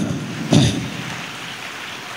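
A pause in amplified speech, filled by a steady, even hiss of background noise that slowly fades, with one short sound about half a second in.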